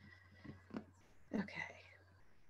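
Quiet room tone with a low steady hum, and a single short spoken 'okay' a little past halfway through.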